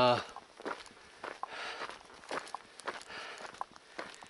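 A hiker's footsteps on a dirt trail at walking pace, a series of soft, irregular scuffs.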